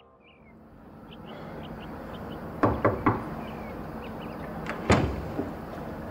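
Knocking at a front door: two quick knocks a little before three seconds in, then a single louder thud about five seconds in. Faint outdoor background with small chirps runs under it.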